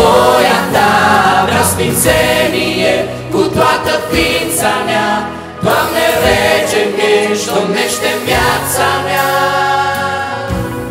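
A worship group singing together, several voices like a small choir behind a lead singer, accompanied by a strummed acoustic guitar.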